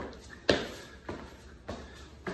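Sneakers stepping and tapping on a hardwood floor during push-up footwork, about two knocks a second.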